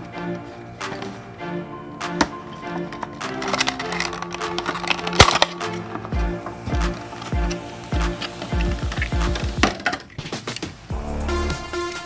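Stiff clear plastic blister packaging being pried and pulled off a cardboard toy card, crackling and clicking in a series of sharp snaps, with one loud crack about five seconds in. Background music plays throughout.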